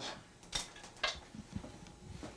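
Light metallic knocks and clinks as a VW Type 1 engine's crankcase half is lifted off the other half: two sharper knocks about half a second apart, then a few softer ones.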